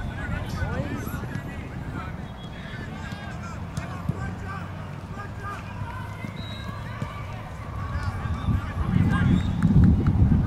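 Distant calls and shouts of players and spectators across a soccer field, with a low rumble of wind on the microphone that grows louder near the end.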